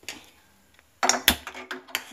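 Sharp clicks and metallic knocks through the second half from the gas stove's burner knob being turned down to a low flame and the iron kadhai on the burner being handled. A faint click comes first.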